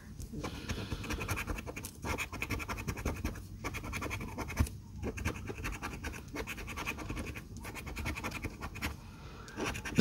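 A gold-coloured coin scratching the coating off a paper scratch-off lottery ticket in rapid back-and-forth strokes, broken by a few short pauses as it moves from spot to spot.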